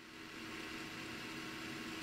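Low, steady hiss with a faint constant hum underneath, slowly getting a little louder: background room tone at a workbench.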